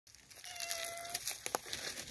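A domestic tabby tom cat gives one thin meow held on a steady pitch for under a second, among crackling rustles and sharp clicks.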